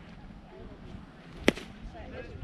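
A single sharp crack of a pitched baseball at home plate, about one and a half seconds in.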